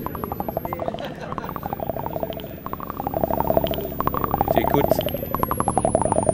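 Eurorack modular synth patch: a step sequencer pinging a resonant filter, fed through a Joranalogue Delay 1 bucket-brigade delay, giving a fast, regular stream of short pitched pings with their echoes. Near the end a faint, very high whine from the delay's clock falls steadily in pitch as the clock oscillator is tuned down.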